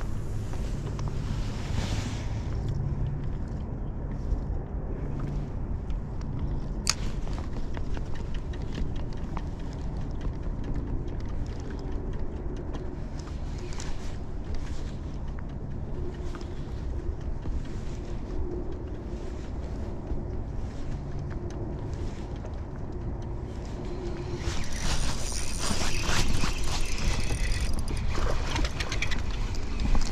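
Steady low wind rumble on the microphone, with a faint hum from the boat's bow-mounted electric trolling motor. There is a single sharp click about seven seconds in, and a louder rush of hiss in the last five seconds.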